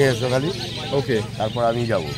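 A man's voice talking close to the microphone, with no clear non-speech sound.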